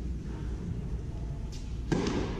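A tennis ball bounced on an indoor hard court: a faint knock, then a louder sharp bounce near the end, over the low hum of a large hall.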